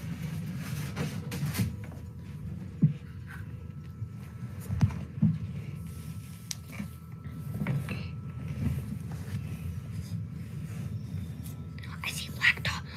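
Eggs being handled on a homemade wooden egg candler: a few small knocks and taps, with some rubbing, over a low steady room hum. The sharpest taps come about three and five seconds in.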